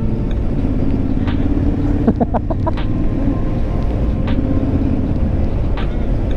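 2017 Triumph Street Scrambler's 900 cc parallel-twin engine running at a steady cruise, with wind rumbling on the microphone.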